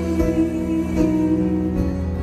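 Live band accompaniment led by acoustic guitar in an instrumental passage of a flamenco-pop song, with no singing; held chords change about once a second.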